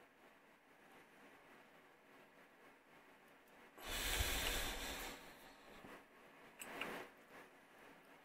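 Near silence, then about four seconds in a breath close to the microphone lasting over a second, and a shorter, fainter breath near the end.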